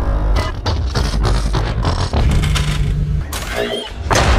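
Loud soundtrack mix of rapid, rhythmic percussive hits over a steady deep bass, with a held low note about two-thirds of the way in and a brief gliding effect near the end.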